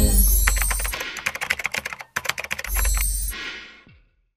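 Rapid computer-keyboard typing sound effect: two quick runs of clicks with a short break between them, over two deep bass hits. It fades out near the end.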